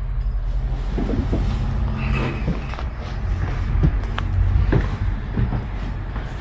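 Steady low rumble with soft scraping, then a few light knocks and footfalls on the metal floor of a parked locomotive cab, about three over the last two seconds.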